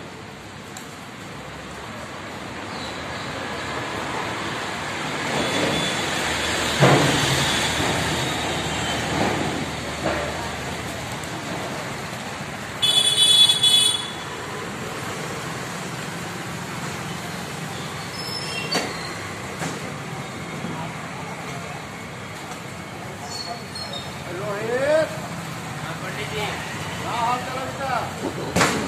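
Street traffic: a vehicle passes, its noise building for several seconds and then fading. About halfway through comes a short, high-pitched horn beep.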